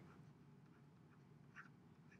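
Near silence: faint room tone, with a faint short tick about one and a half seconds in.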